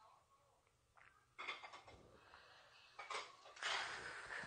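A woman exhales in a breathy, rasping "kheu" gasp near the end, the throat-burn reaction after downing a shot of soju. Before it comes a light tap as the small shot glass is set back on the table.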